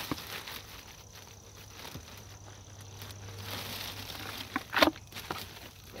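Handling noise from a plastic nursery pot and potting soil being worked to free a lemon tree: scattered rustling and scraping, busier past the middle, with one short, louder knock about five seconds in.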